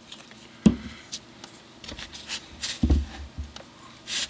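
Handling noises at a workbench as a glue bottle and a guitar body are moved about: a sharp knock about half a second in, light rustling and small clicks, then a duller thump near three seconds.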